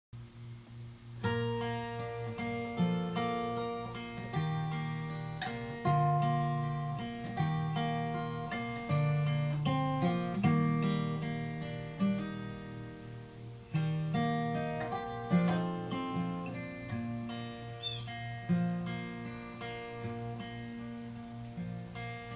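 Solo acoustic guitar, picked note by note in an instrumental intro. The notes ring out and overlap, starting about a second in.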